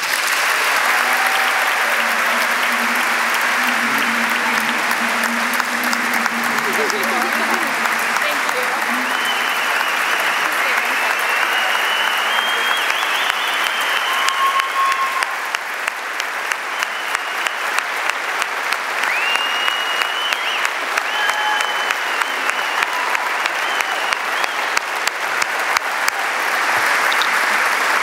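Audience applauding steadily and at length, a sustained ovation.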